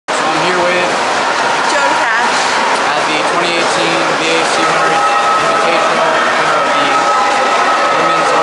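A young woman speaking over a steady, noisy background din.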